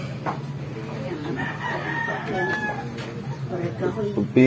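A rooster crows once, a single long call starting about a second in.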